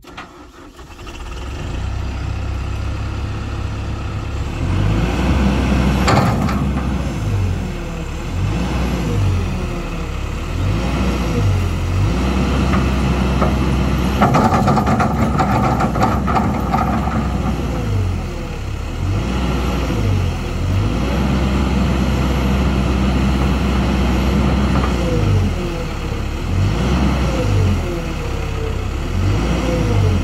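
Diesel engine of a Kobelco SK200 crawler excavator starting and coming up to speed, then running under hydraulic load while the boom, arm and bucket are worked. The engine note steps up and down with the load, and whines from the hydraulics glide up and down over it.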